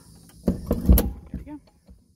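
Metal door hold-back rod on a horse trailer's dressing-room door being handled: rattling and a low thump from about half a second in, then a sharp metallic click about a second in.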